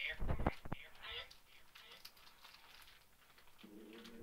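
A heavy, muffled thump with a few clicks near the start, then faint low voices and whispering. A steady humming tone begins shortly before the end.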